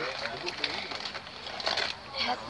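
Indistinct voices of people talking inside a moving train carriage, over the train's steady running noise, with several sharp clicks, the loudest near the end.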